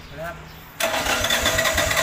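The generator's Subaru engine is cranked over and starts suddenly about a second in: a loud mechanical whine with rapid low pulses, about five a second.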